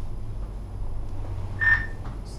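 Steady low hum of a moving Leitner 3S gondola cabin, with one short high chirp near the end.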